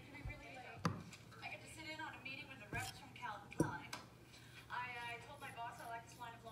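A woman speaking, with three sharp taps: about one second in, near three seconds, and the loudest just after three and a half seconds.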